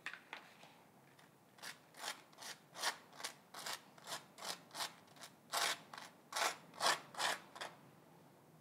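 Table knife spreading butter on a slice of toast: a run of short rasping scrapes, about two to three strokes a second, starting after about a second and a half.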